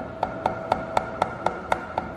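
Shehds 100 W LED spot moving head running in sound-active mode: its motors click about four times a second over a steady high whine.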